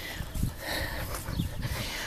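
Standard poodle puppy moving and being handled close to the microphone: soft, irregular rustling with a few low thumps.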